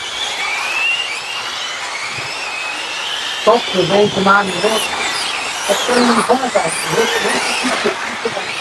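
High-pitched whine of electric 1/8-scale RC GT cars' brushless motors racing on the track, the pitch rising and falling as they accelerate and brake, several cars overlapping.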